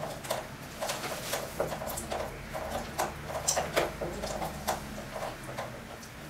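A halved citrus fruit being twisted and pressed on a plastic hand juicer's reamer: a run of short, irregular rubbing and squishing strokes, two or three a second.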